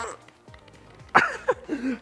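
A man's strained vocal noises, a few short sounds falling in pitch about a second in, from the effort of forcing a square-cut pipe end into a soil-pipe socket.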